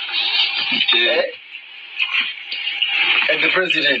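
Indistinct voices talking in a small room, with a man's voice coming through clearly near the end.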